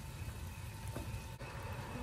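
Pot of beef broth simmering on the stove with napa cabbage in it: a low, steady rumble and hiss, with a faint click about one and a half seconds in.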